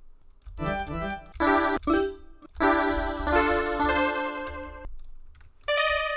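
Synth preset in FL Studio's Morphine synthesizer being auditioned: a few short notes and chords, then a longer phrase of changing notes from about two and a half seconds in, and one more chord near the end.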